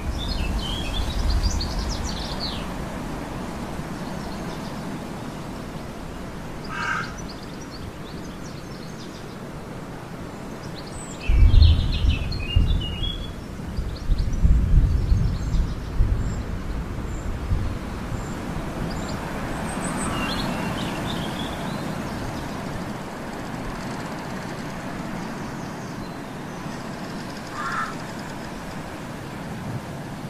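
Outdoor ambience: birds chirping now and then over a steady background noise, with a few short calls. A louder low rumble comes in gusts from roughly a third of the way in to about halfway.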